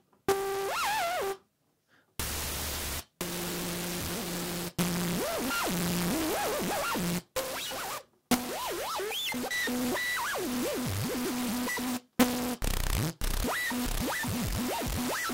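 ZynAddSubFX software-synthesizer patch imitating a scratched vinyl record, played from a MIDI keyboard. It sounds as a string of separate held notes, each a hiss with a steady tone beneath it, with pitch swoops up and down from the pitch wheel and short silences between the notes.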